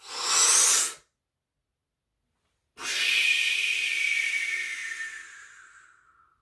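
A man takes a deep breath: a sharp inhale of about a second, a pause of nearly two seconds while he holds it, then a long audible exhale lasting about three seconds that slowly fades away.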